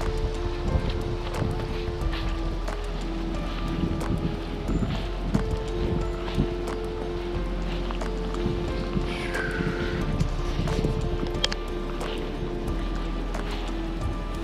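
Background music: held notes that change every second or so over a steady percussive beat.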